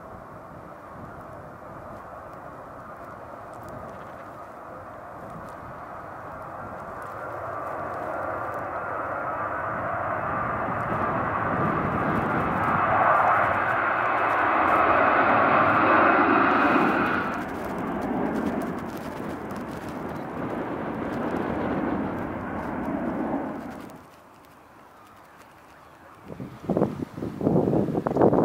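Twin-engine jet airliner taking off and climbing out overhead: the jet engine roar builds steadily, with a fan whine on top, is loudest as it passes over about halfway through, and then fades. The sound cuts off suddenly near the end, followed by a few loud gusts of wind on the microphone.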